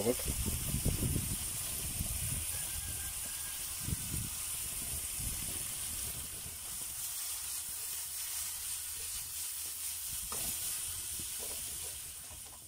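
Minced meat sizzling in a frying pan over a wood fire: a steady frying hiss, with a few low bumps in the first couple of seconds and again about four seconds in.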